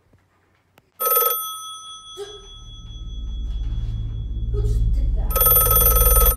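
Telephone bell ringing: one ring about a second in whose tones hang on, a low buzz that swells, then a second ring near the end.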